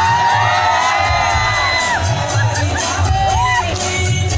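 An audience cheering and shouting over dance music with a bass beat. The cheering is loudest in the first two seconds and comes back in shorter shouts later.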